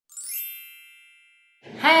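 An intro chime sound effect: a single bright, bell-like ding with a quick upward sparkle at its start, ringing on and fading away over about a second and a half.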